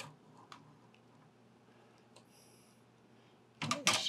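A few faint clicks of the metal vertical GPU bracket knocking against the PC case frame as it is fitted, with louder knocks near the end; mostly quiet in between.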